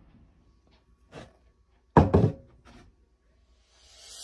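Knocking: a soft knock about a second in, then a louder cluster of sharp knocks and thuds about two seconds in.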